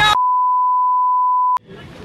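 Censor bleep: one steady, pure high beep held for about a second and a half, ending with a click, then faint outdoor background.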